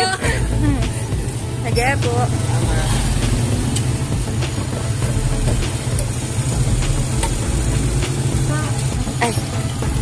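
A tricycle's motorcycle engine idling with a steady low rumble, with short snatches of talk over it.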